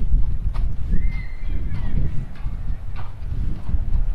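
Wind buffeting the microphone with a steady low rumble. Over it come a few scattered sharp clicks and one short, high, arching squeal about a second in.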